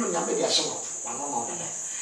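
A man's voice, indistinct and with no clear words, over a steady high-pitched drone.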